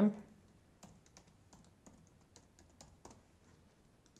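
Computer keyboard being typed on: an irregular run of light key clicks as a short caption is entered.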